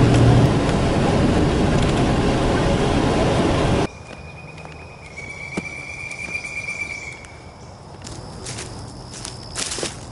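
Car driving on a gravel road, a loud steady rush of tyre and road noise heard from inside the vehicle, which cuts off suddenly about four seconds in. Then it is much quieter outdoors: a steady high-pitched tone lasts about three seconds, and footsteps through grass and leaf litter follow near the end.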